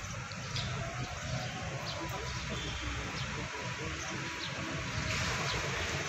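Outdoor background noise: a steady low rumble with a few faint, short high chirps.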